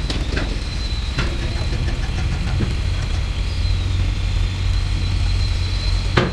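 An engine running steadily with a low rumble and a thin, steady high whine, with a couple of short knocks in the first second or so.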